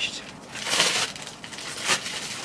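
Clear plastic wrapping and protective film crinkling as it is pulled off a new lighted makeup mirror, with a louder rustle a little over half a second in and a short, sharp crackle near the end.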